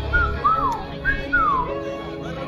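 A person whistling four short notes, the second and fourth sliding down in pitch, over background music.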